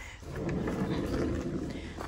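A shed's wooden-framed glass door being opened and stepped through: a rough rustling scrape lasting well over a second.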